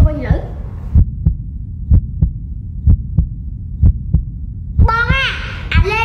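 A heartbeat-style bass beat in the soundtrack: low double thumps, about once a second, over a low hum. A voice comes in near the end.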